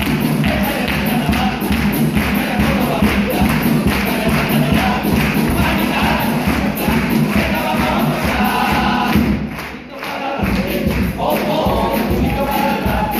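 A chirigota's bass drum and snare beating a lively, steady rhythm with guitars and the group singing together, breaking off briefly just before ten seconds in.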